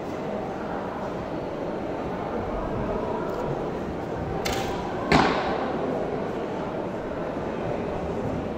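A Japanese longbow (yumi) shot: a short high swish as the arrow is released at about four and a half seconds in, then about half a second later a sharp crack as the arrow strikes at the target end, echoing in the big hall. A steady hall murmur runs beneath.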